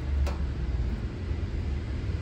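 A single sharp click about a quarter second in, over a steady low rumble: the fuel tap of a 1991 Yamaha DT 180 being turned by hand.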